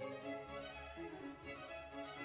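Instrumental background music with bowed strings, a slow melody of held notes.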